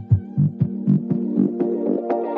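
Background music cut down to a sparse break: a low throbbing pulse about four times a second under a steady held hum.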